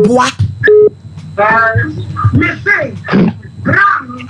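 Speech only: a woman talking animatedly in Twi.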